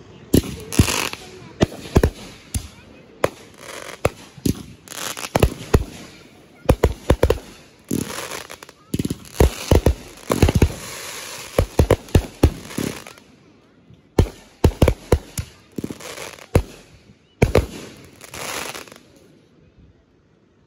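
Aerial fireworks bursting overhead in quick succession: a long run of sharp bangs, some in tight clusters, with crackling between them, dying away near the end.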